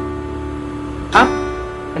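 Acoustic guitar strummed slowly in a down-up pattern: the chord from a downstroke rings on, and an upstroke sounds about a second in.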